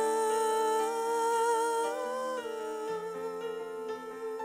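A woman's wordless singing on a long, slightly wavering held note that steps up about two seconds in and falls back, over soft sustained chords from a Yamaha S90XS synthesizer keyboard. The keyboard's bass note changes about three seconds in.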